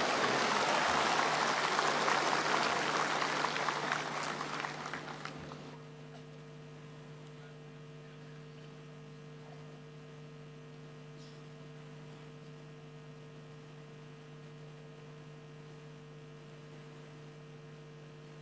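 Audience applause in a large hall, dying away over the first five seconds or so. After it a steady electrical hum remains.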